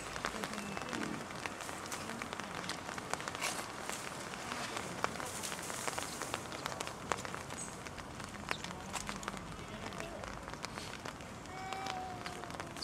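Rain pattering steadily, with many small drip ticks on nearby surfaces and faint voices of people close by, briefly near the start and again at the end.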